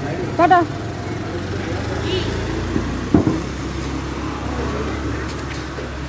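Street traffic: a motor scooter's engine running steadily as it passes. A short call from a voice comes about half a second in, and a single sharp knock about three seconds in.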